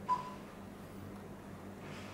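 A single short beep, the key-press tone of an Android touchscreen car stereo as a menu item is tapped, followed by a faint steady hum.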